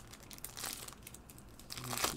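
Foil wrapper of a trading-card pack crinkling as gloved hands tear it open, strongest just under a second in.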